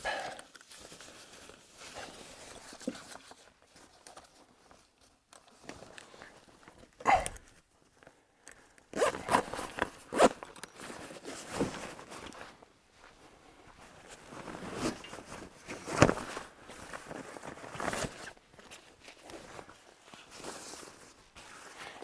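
Zip on a folded tent's canvas travel cover being pulled closed in several separate runs, with the fabric rustling and being handled in between.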